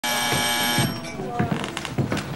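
Electric doorbell buzzer sounding once, a steady harsh buzz that cuts off just under a second in, followed by the murmur of a room full of people talking.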